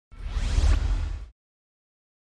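A swoosh sound effect for a logo intro, about a second long, with a deep rumble underneath and a rising sweep, ending abruptly.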